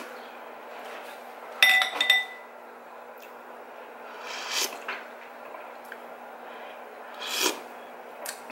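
A ceramic soup spoon clinks twice against a bowl about a second and a half in, ringing briefly. Soft sips of soup from the spoon follow around the middle and near the end, over a steady low hum.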